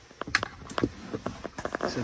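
Handling noise: a series of light clicks and knocks as a plastic 12-volt socket expansion hub and its cable are moved about and laid on the seat.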